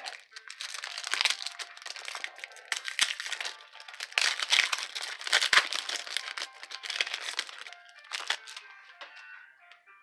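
Foil wrapper of a 1995 Bowman football card pack crinkling and tearing as it is opened by hand, in irregular crackles that die down near the end, with faint music underneath.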